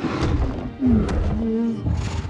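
A giant ape's deep vocal call from the film's sound design, dipping in pitch about a second in and then held, over film score music.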